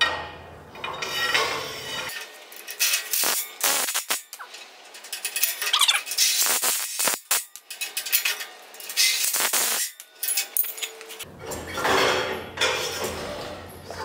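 Steel torsion bar being slid by hand into the nylon-bushed front torsion tube of a sprint car chassis, with irregular metallic clinks and scrapes as the bar knocks against the tube. The bar goes in freely, a sign that the reamed bushings are at the right size.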